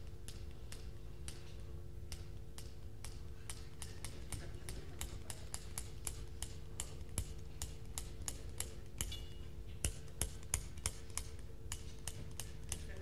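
A faint series of sharp, irregular clicks, a few a second and coming quicker near the end, over a low steady hum.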